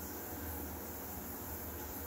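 Steady low electrical hum with a faint hiss, from the inverter system and its appliances running under a load of about 1 kW.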